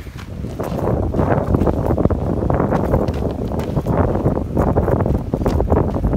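Wind buffeting the microphone in a loud low rumble, with footsteps on gravel-covered wooden steps going down a staircase.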